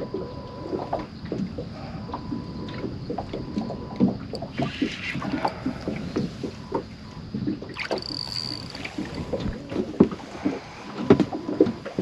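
Irregular knocks, clicks and splashes as a hooked barramundi is fought close beside a small boat on a spinning rod.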